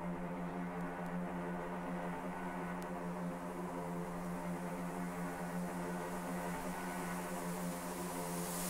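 Quiet electronic music from a drum and bass track: a sustained synth pad chord held steady with no beat, and a high hiss swelling near the end.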